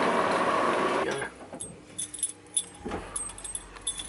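Busy street noise that cuts off abruptly about a second in, followed by a quieter stretch with scattered light metallic clinks and jingles.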